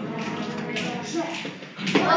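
Murmuring voices and the shuffling of children moving about in a hall, with a few light taps; just before the end the children start singing together.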